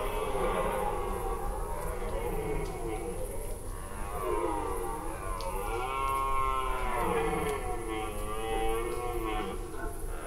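Red deer stags roaring in the rut, giving their chasing calls (Sprengruf). Several drawn-out roars overlap, rising and falling in pitch, the loudest about six seconds in.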